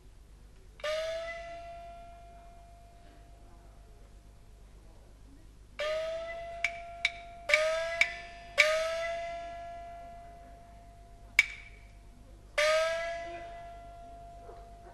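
Peking opera percussion: five strokes of the small gong (xiaoluo), each ringing on with its pitch bending slightly upward, with short sharp clapper clicks between the strokes in the middle of the passage.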